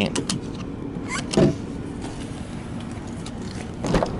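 A few sharp clicks at the start as the minivan's fuel filler door and cap are handled, then a steady noise with no clear pattern, and another click near the end.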